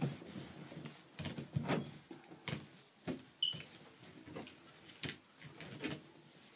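Gloved hands drying salon implements with a cloth towel: soft, irregular rubbing and light knocks as the implements are handled and laid down, with a short high squeak about three and a half seconds in.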